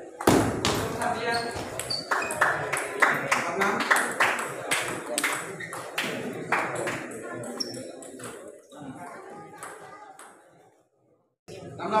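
Table tennis ball clicking repeatedly against the bats and table, with background voices in the hall; the sound fades away to silence shortly before the end.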